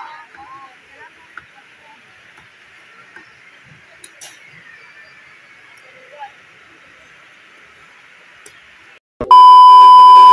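Faint steady background noise with a few scattered voices, then, about nine seconds in, a brief gap followed by a loud, steady test-pattern beep lasting about a second: the tone that goes with a colour-bar screen.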